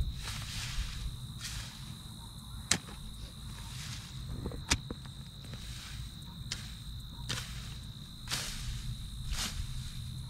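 A long-handled digging tool chopping into dry garden soil: sharp strikes every second or two, each with a scraping swish of dirt and grass. A steady high-pitched insect drone runs underneath.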